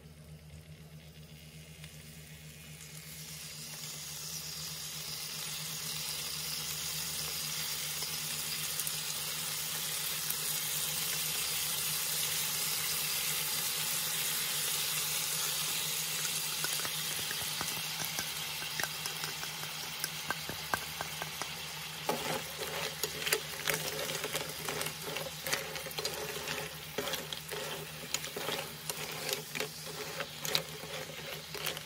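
Abalone in their shells sizzling in a wok: a steady frying hiss that builds over the first few seconds and holds. About two-thirds of the way through it turns to sauce bubbling and crackling with many sharp pops.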